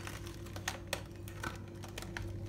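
Scattered light crackling clicks, a few in two seconds, as hands turn a whole raw cabbage in a stainless steel bowl. A low steady hum runs underneath.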